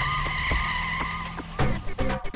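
Vehicle tyres screeching as a police jeep pulls up, a steady high squeal over engine noise. About one and a half seconds in, upbeat music takes over.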